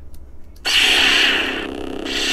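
Lightsaber ignition sound played from the Sabertrio hilt's soundboard speaker: a loud, hissing electronic surge that starts just over half a second in as the blade lights, easing off after about a second.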